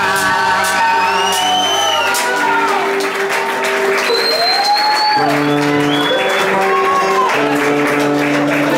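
Live band with keyboard and electric guitar holding long sustained chords, the bass dropping out about two seconds in and coming back a few seconds later. Over it the audience whistles several times and applauds.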